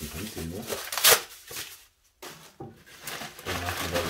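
Split wood pieces knocking together once, about a second in, as they are taken from a basket, then a plastic bag rustling near the end.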